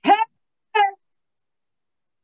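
A woman's voice singing "higher" as two short, high sung syllables, the first sliding upward in pitch, then silence.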